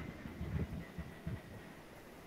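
Quiet pause: faint low rumble of background microphone noise, with no distinct event.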